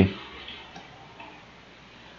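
A couple of faint computer mouse clicks over quiet room tone.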